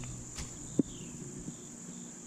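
Steady high-pitched insect chorus, typical of autumn crickets, with a single sharp click a little under a second in.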